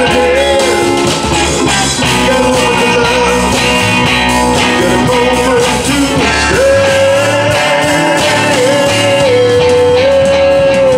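Live rock band playing electric guitar, bass guitar, keyboard and drum kit. A lead line plays a melody and, from about two-thirds of the way in, holds one long note that dips once and carries on.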